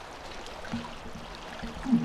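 Shallow seawater lapping quietly. A faint low steady tone comes and goes in the second half.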